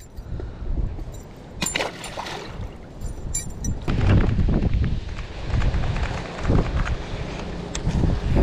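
A few light metallic clinks from a spinnerbait's blade and hook while a bass is unhooked by hand, one about two seconds in and another about three and a half seconds in. From about four seconds on, wind buffets the microphone.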